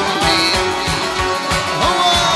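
Live Turkmen folk band playing an instrumental passage: drums beating about four or five times a second under a melody that slides between notes, with plucked dutar strings.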